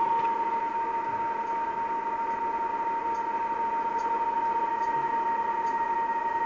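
Kenwood R-2000 shortwave receiver audio: one strong, steady tone over band hiss, a digital-mode data signal on the 40 m band coming in very strong. A second, fainter and higher tone joins about five seconds in.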